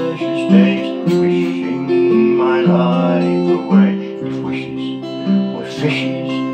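Acoustic guitar strummed in slow, steady chords, accompanying a folk ballad.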